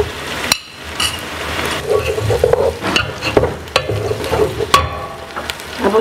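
Chopped vegetables being spooned into a pot of onions frying in hot oil: a metal spoon clinks against the aluminium pot and plate in short knocks while the oil sizzles and the pot is stirred.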